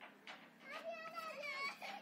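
A young child's high-pitched voice, wordless calling or babbling with the pitch sliding up and down, starting a little under a second in, after a few faint clicks.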